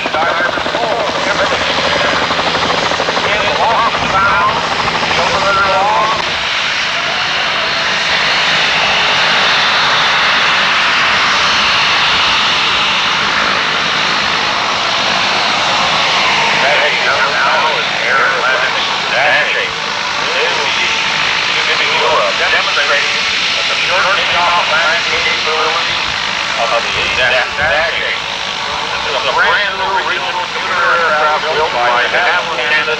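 A helicopter in flight, a steady low drone, cuts off about six seconds in. Then the engines of a de Havilland Dash 8 twin turboprop taxiing on the runway give a loud, even, hissing whine, with people's voices talking over it in the second half.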